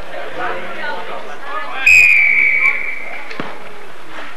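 Referee's whistle, one long blast about two seconds in, sliding slightly down in pitch: the signal for the kickoff. About a second later there is a short sharp knock, the ball being kicked off, over the crowd chatter.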